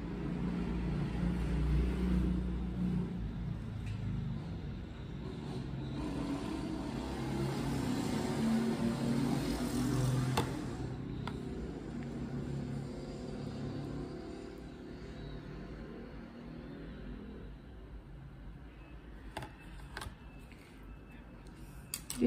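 Low rumble of a motor vehicle's engine, growing louder to about ten seconds in and then slowly fading away.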